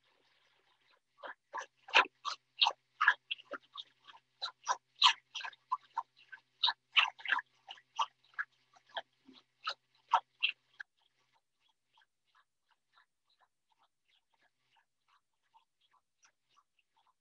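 Thermomix blending canned peaches and sugar at speed 9 for a peach purée, heard over a Zoom call's audio. The motor and crunching fruit come through broken into rapid separate bursts, about three or four a second, for some ten seconds, then fade to faint scattered ticks.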